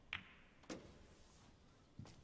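Two sharp clicks of snooker balls about half a second apart, the cue striking the cue ball and then the cue ball hitting a red, over a hushed arena.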